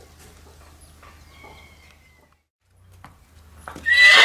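A few faint knocks against quiet outdoor background, then right at the end a stallion starts a loud whinny, calling out because he is unsettled at being separated from the other horses.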